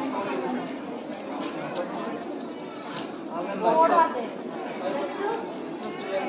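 Indistinct chatter of many overlapping voices, with one voice rising louder a little past the middle.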